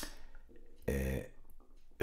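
A man's short, low wordless vocal sound about a second in, a hesitation in the middle of his sentence, after a sharp mouth click at the very start.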